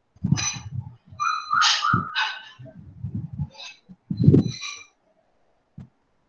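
A series of short animal cries, like a household pet's, in quick succession; the loudest comes about four seconds in.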